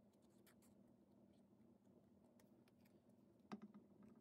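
Near silence: faint clicks and rustles of paper and a liquid-glue bottle being handled, with one slightly louder tap near the end.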